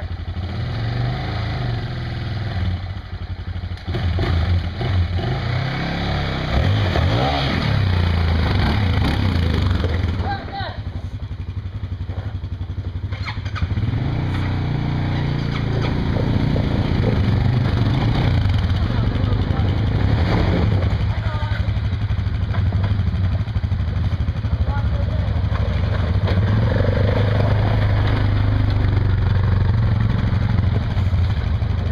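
Several ATV engines running together, mostly idling, with throttle blips that rise and fall in pitch now and then.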